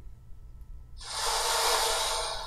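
A rushing hiss that comes in about a second in, swells and holds for about a second, over a low steady hum.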